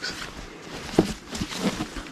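A nylon jacket and the clothes beneath it rustling as they are handled and lifted out of a cardboard box, with a soft knock about halfway through.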